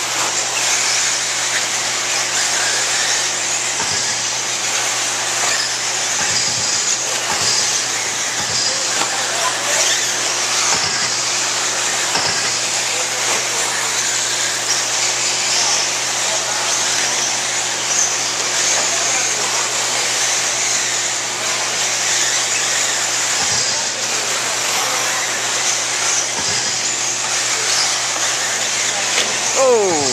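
Several 1/8-scale electric off-road RC buggies running on a dirt track: a steady, high-pitched motor whine with tyre noise, and a few low thumps.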